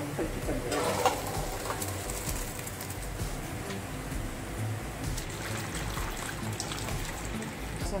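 Boiled rice and its cooking water tipped from a metal pan into a stainless-steel colander, the water pouring and draining through, with a sharp metal clink about a second in.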